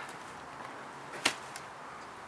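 A single short, sharp click about a second and a quarter in, over faint background.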